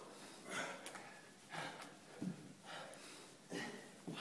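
Heavy breathing from men working through kettlebell Turkish get-ups, with a breath about once a second and a short grunt about halfway through.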